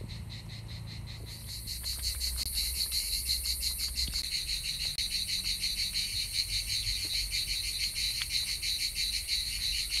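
Cicadas chirring steadily in a fast, even pulse, growing louder about two seconds in.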